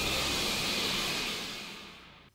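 Anime sound effect for an alchemical transmutation's white flash: a steady rushing hiss that fades away over the last second.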